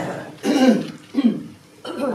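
A woman's voice saying a last word, then clearing her throat once. A short click comes just before the end.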